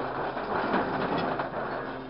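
Scrap metal clattering and scraping in a dense run of rattles as a grapple truck's hydraulic claw grabs and lifts a sheet of scrap from a pile.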